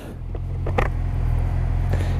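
Motorcycle engine idling steadily, a low even hum.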